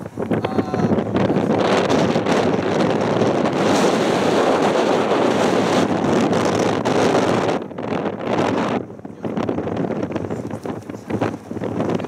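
Wind buffeting the camera microphone: a loud, steady rush for the first seven or so seconds, then dropping and coming back in uneven gusts.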